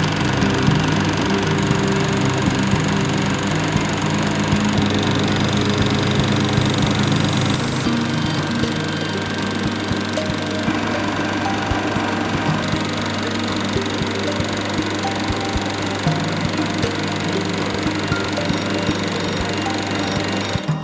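Bell & Howell Filmosound 652 16mm film projector running: a steady motor hum under the fast, even clatter of the film-advance mechanism.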